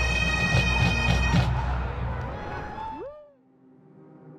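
A pipe band of Highland bagpipes plays over steady drones, with drum strokes about every half second. The music fades about one and a half seconds in, and the pipes stop with a short sliding drop in pitch about three seconds in.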